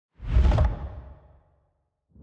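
A deep whoosh sound effect with heavy low rumble, swelling up quickly and fading away over about a second.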